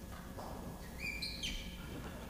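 A short high-pitched squeak about a second in, lasting about half a second and stepping down in pitch partway through, over quiet room tone.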